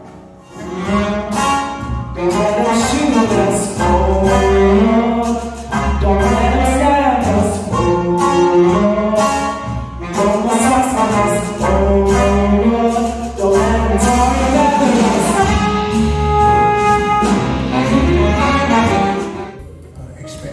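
Live jazz band playing together: saxophones, trumpet and trombone over piano and upright bass, with a strong bass line underneath. The piece stops just before the end.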